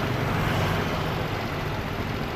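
A vehicle engine idling with a steady low hum, over a haze of street noise.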